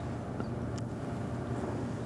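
Steady low hum and hiss of room tone on an old lecture-tape recording, with a couple of faint ticks.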